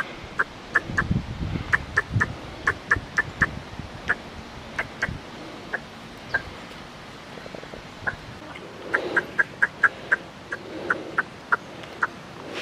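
A series of short, high chirping calls in irregular runs, up to about four a second, with a low rumble during the first few seconds.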